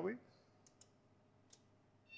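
Near silence with three faint clicks, two close together and a third about half a second later: the controls of an electric forklift being set while its drive motor is not yet running.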